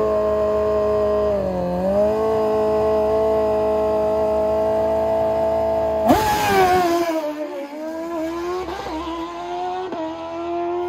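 Drag-racing sportbike engine held at a steady high rev on the start line, dipping briefly about one and a half seconds in. About six seconds in it launches with a sudden loud burst and sharply rising revs, then the note drops lower and quieter as the bike pulls away.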